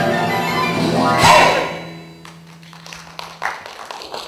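A stage musical number ends: the pit orchestra and chorus hit a loud final chord about a second in, a low note holds and fades, and scattered applause starts up.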